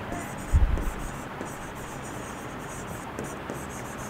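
Stylus writing on an interactive display's screen, a faint scratching and tapping over steady background hiss, with a brief low thump about half a second in.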